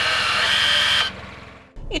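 Dacia Jogger's electric parking brake being applied: the actuator motor at the wheel's brake whirs for just over a second, stepping up slightly in pitch partway through, then stops abruptly.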